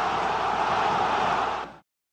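Steady background noise with no clear source, which fades out and drops to silence near the end.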